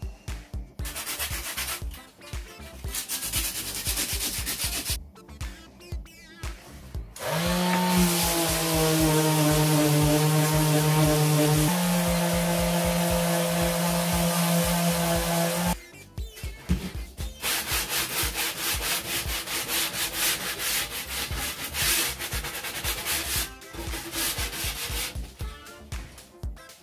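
Plywood being sanded by hand with 60-grit sandpaper in quick back-and-forth rubbing strokes. From about seven seconds in, an electric detail sander runs steadily for about eight seconds, its pitch stepping slightly lower partway through, and then the hand-rubbing strokes start again.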